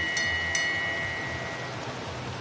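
Last-lap bell at a track race being rung rapidly, its last two strikes in the first half second, then the bell's ringing fading out before the end, over the steady noise of a stadium crowd.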